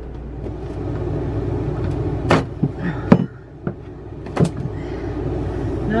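About five sharp knocks of a hammer and pry bar working at the floor, bunched in the middle, the loudest about three seconds in. A steady low hum runs underneath.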